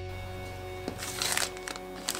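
Background music, with a click just before a second in and then about half a second of plastic-bag crinkling as a bag of nickel strip is handled.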